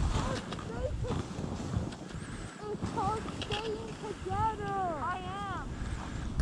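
Wind buffeting the microphone, with a person's voice calling out in several rising-and-falling, wordless-sounding calls in the second half.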